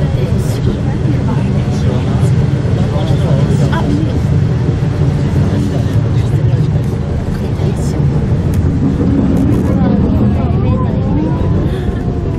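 Steady low rumble of a ropeway (aerial tramway) cabin running down its cable, with passengers talking in the background, their voices clearer near the end.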